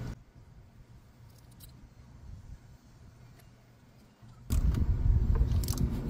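Faint small clicks of a metal adapter and bolts being handled against the engine parts, then about four and a half seconds in a steady low rumble of background noise sets in.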